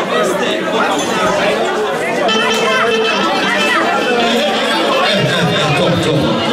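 Crowd chatter: many guests talking at once in a large hall, a steady din of overlapping voices.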